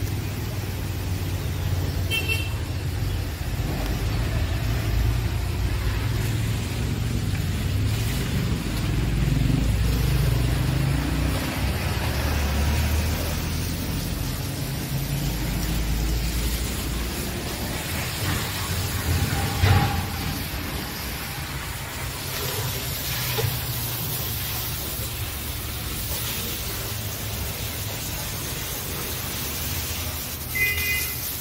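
A motor running with a steady low drone that swells and eases in level. A brief high-pitched toot comes about two seconds in.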